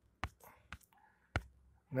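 Three sharp, short clicks about half a second apart, with faint breathy sounds between them, as pages of a document on a screen are clicked through one after another. A voice begins right at the end.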